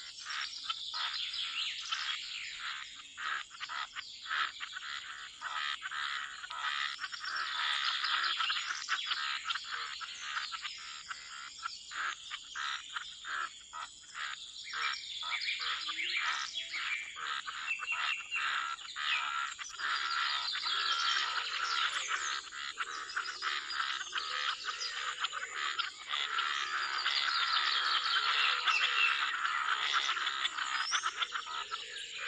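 A dense chorus of frogs croaking, with bird chirps mixed in. It grows a little louder near the end.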